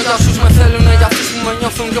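Hip hop track with a man rapping in Greek over a beat with heavy, repeating bass hits.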